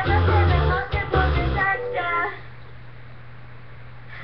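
A young girl singing a pop song along with music, which stops about two seconds in; after that only a steady low hum remains.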